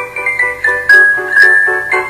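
Background music: a quick melody of short struck notes, several a second.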